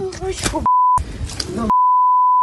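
Swearing bleeped out twice by a steady high censor beep that fully mutes the voice under it: a short beep about two-thirds of a second in and a longer one near the end, with snatches of a shouting voice between them.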